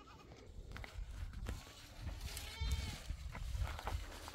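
A goat bleats once, a short wavering call about halfway through, over a low rumble.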